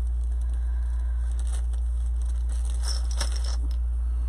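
Light crinkling and rustling of ribbon and plastic being handled at a craft table, thickest about three seconds in, over a steady low hum.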